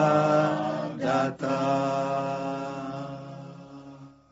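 A man's voice singing long, drawn-out notes in a slow, chant-like way, with a brief break about a second in, then fading away near the end.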